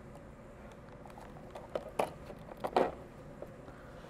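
Handling of a cut-open thin PET plastic bottle while string is looped around its neck: a few soft plastic crinkles and taps, the sharpest about two seconds in.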